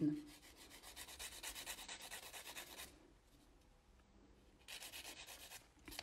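A 180/180-grit nail file scraping back and forth across the edge of a natural fingernail, faint quick even strokes about five a second. It runs for about two and a half seconds, stops, and starts again for about a second near the end.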